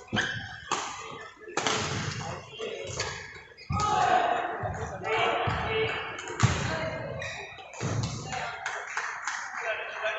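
Badminton rally: sharp racket strikes on the shuttlecock and players' footfalls on the court, the sharpest hit about six and a half seconds in, over voices in a large sports hall.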